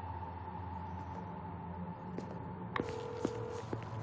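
A low steady hum with a faint high tone under it. Near the end a phone call's ringing tone begins in the earpiece: a steady mid-pitched beep that stops and starts again, with a few soft clicks.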